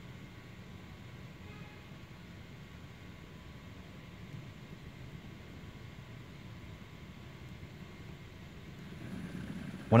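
3D-printed cycloidal actuator driven by a 5010 BLDC motor, running at low speed: a steady low hum with a faint thin whine, growing slightly louder near the end.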